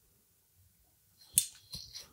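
Mostly quiet room, with one short sharp click a little past halfway and faint rustling after it.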